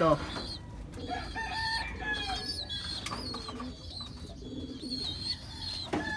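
Birds calling over one another: several high, drawn-out calls and chirps, with low pigeon cooing underneath.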